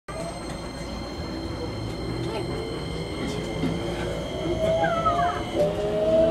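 Keikyu electric train heard from inside the rear cab, accelerating: a steady running rumble with the traction motor whine rising slowly in pitch and growing louder in the second half. A brief falling squeal comes about 5 s in.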